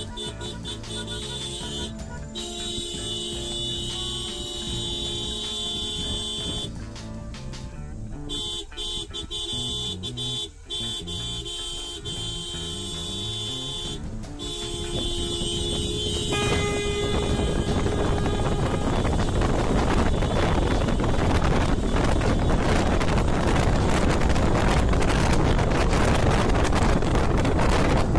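Several car horns sounding together in long, steady blasts that break off briefly a few times. Past the middle they give way to a rising rush of road and wind noise from the car as it gets moving.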